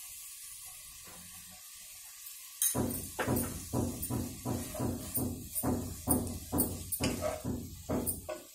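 A spatula stirring a pan of chopped long beans in a granite-coated pot. After a faint start, it knocks and scrapes against the pot in a quick, even run of about three strokes a second, beginning about three seconds in.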